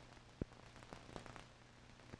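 Near silence: faint hiss and a low steady hum from an old film soundtrack, with a few soft clicks, the clearest about half a second in.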